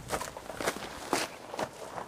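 Footsteps on outdoor ground, four steps at an even walking pace of about two a second.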